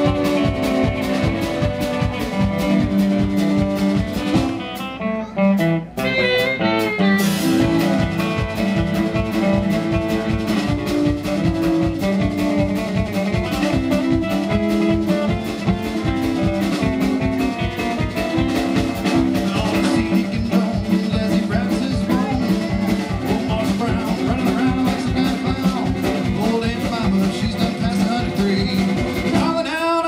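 Live acoustic guitar, fiddle and drum kit playing an up-tempo bluegrass-jazz tune. The band thins out briefly about five seconds in, then comes back in at full strength.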